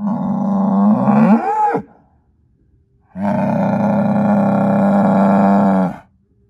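Angus bull bellowing twice. The first call lasts nearly two seconds and ends in a swoop up and down in pitch. After about a second's pause comes a longer, steady call of nearly three seconds.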